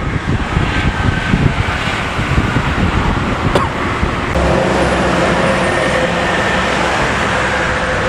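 Toll-road traffic noise: an uneven low rumble at first, then, from about four seconds in, a steadier engine drone with a held hum as a coach approaches along the carriageway.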